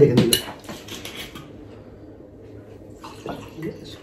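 A sharp clatter of glassware and cutlery right at the start, then red wine poured from a bottle into a wine glass, glugging near the end.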